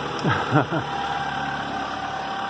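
Toyota Camry 2.2-litre four-cylinder engine idling steadily, with a short vocal sound from the person working on it about half a second in.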